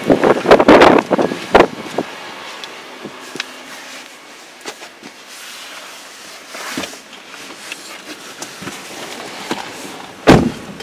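Car door of a 2019 Toyota Avalon Limited being opened and someone climbing into the driver's seat: a quick run of clicks and knocks in the first second and a half, then quiet shuffling with a few faint knocks.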